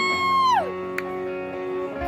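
Electric guitar playing a slow song intro through the band's amplifier: sustained chord notes ring out, and a high held note slides down in pitch within the first second.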